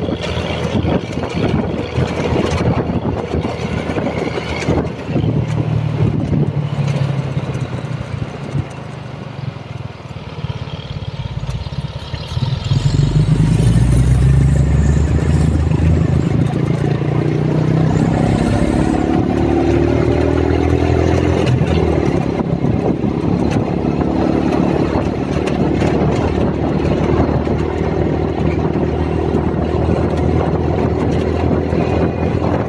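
Motorcycle ride along a highway: wind buffeting the microphone and road noise. About twelve seconds in, engine noise grows louder, then climbs in pitch as the engine speeds up, and holds steady.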